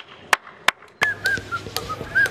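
Three quick hand claps about a third of a second apart. About a second in they give way to repeated short, high chirps like small birds calling, with scattered light clicks.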